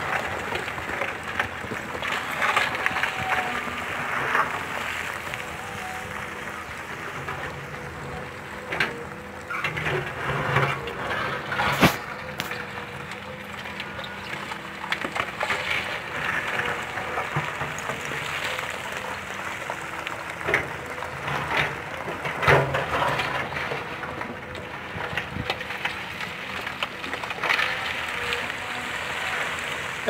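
Caterpillar tracked hydraulic excavator running steadily as its bucket digs into rocky fill, with rocks clattering and knocking against the bucket and each other and one sharp crack near the middle.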